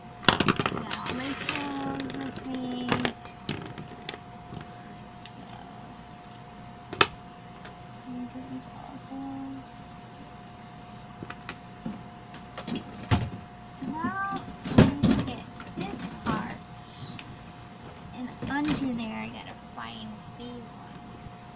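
Irregular knocks, clicks and clatter of hand tools and plastic wagon parts being handled during assembly, with the sharpest knocks near the start and about halfway through, over a faint steady hum.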